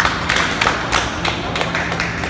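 A few people clapping, irregular hand claps several a second in a large room.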